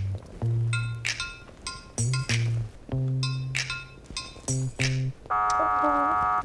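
Tense background music score: low bass notes repeating in phrases under short, bright, chiming hits. About five seconds in, a held buzzer-like tone sounds for about a second, a sting for a contestant being eliminated.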